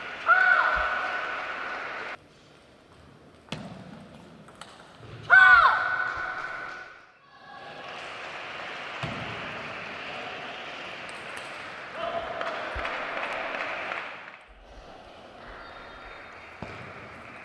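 Table tennis ball clicking off rackets and table in short rallies, with loud shouts from a player after points, about half a second in and again about five seconds in. Reverberant sports-hall background throughout.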